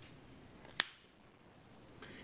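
Ganzo G719 automatic knife firing open: one sharp snap, about three quarters of a second in, as the spring-driven blade swings out and locks. Otherwise quiet room tone.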